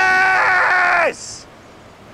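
A man's loud, wordless celebratory yell, held steady for about a second and dropping in pitch as it ends.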